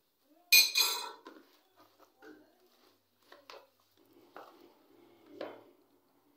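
A sharp clatter of kitchen utensils about half a second in, then soft taps and scrapes of a silicone spatula stirring chicken pieces with yogurt and spices in a plastic tub.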